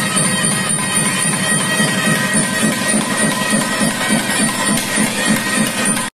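Traditional South Indian temple music: a reed wind instrument playing over a steady drum beat.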